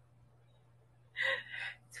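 A quiet pause, then a little over a second in, a woman draws one short, audible breath just before she starts speaking.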